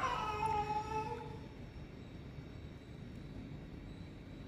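A person's drawn-out, high-pitched voice held for about a second, falling slightly in pitch, then only low background noise.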